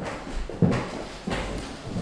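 Several people's footsteps on a wooden parquet floor, hard heels knocking unevenly, with a few heavier thuds, the loudest just over half a second in.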